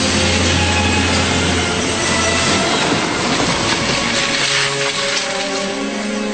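A passing train, its rumble and wheel clatter loudest in the middle and thinning near the end, with background music under it.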